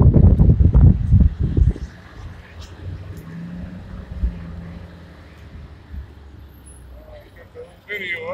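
Motor vehicle noise: a loud low rumble for the first couple of seconds, then a quieter steady low hum.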